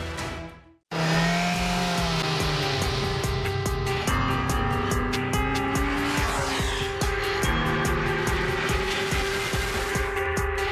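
After a brief drop to silence just before a second in, a Kawasaki Ninja sport bike's engine revs hard through a corner at speed, its pitch rising and falling, over loud music with a steady beat.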